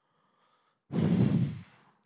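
A man's sigh, an exhaled breath blown straight into a handheld microphone: one short, loud rush of air about a second in, fading out within a second.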